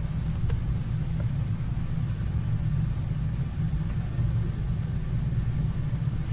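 Steady low rumble of background room noise with nothing else standing out.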